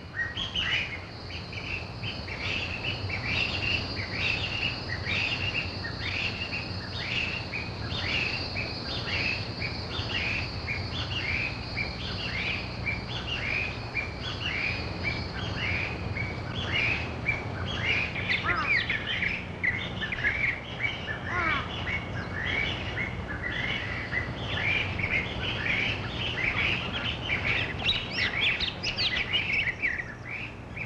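Taiwan blue magpies calling in a long series of short calls, about two a second, with a steady high-pitched buzz under them that stops about halfway. Some longer falling calls follow, and the calling gets busier near the end.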